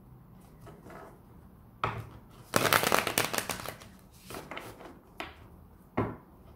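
A tarot deck being shuffled by hand, the cards slapping and riffling together in short bursts. The longest and loudest flurry comes about two and a half seconds in and lasts about a second, followed by a shorter burst and a couple of single snaps.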